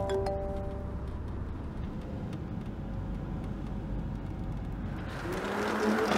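Volkswagen Passat driving slowly: a steady low engine and road rumble that grows louder about five seconds in as the car approaches.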